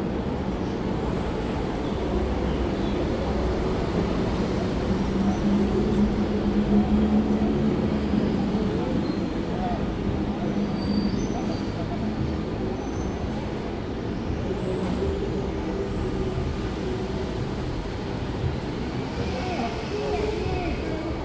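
Steady city street traffic. A low engine drone from a passing vehicle swells between about five and eight seconds in.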